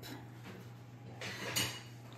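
Quiet kitchen room tone with a steady low hum, and a brief soft noise about one and a half seconds in.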